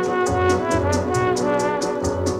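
Instrumental dance-orchestra passage: a brass section holds chords over a bass line, with a steady percussion beat of about four strokes a second.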